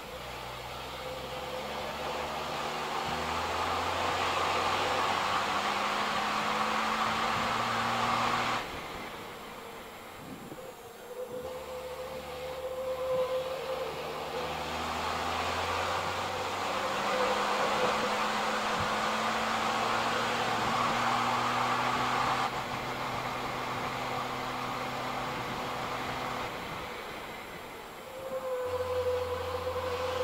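Racing truck's turbo-diesel engine heard from inside the cab, running hard under full throttle. It drops off suddenly twice, about nine seconds in and again a little past twenty seconds, as the driver lifts off into corners, then comes back on the power.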